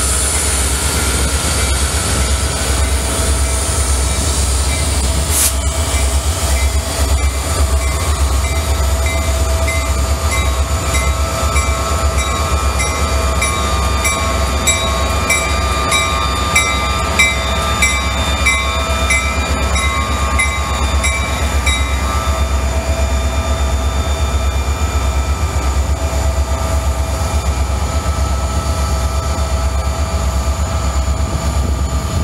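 EMD SD40-2 diesel-electric locomotives, each with a two-stroke V16 engine, running under power as they pass and pull away, with a steady deep rumble. One sharp bang comes about five seconds in, and in the middle a run of regular metallic clicks comes about every two-thirds of a second along with thin steady ringing tones.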